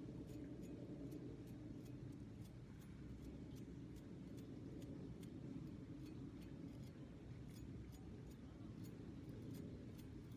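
Light ticking, two or three ticks a second, as a palette knife is drawn across the bristles of a paint-loaded fan brush to spatter paint, over a faint low rumble.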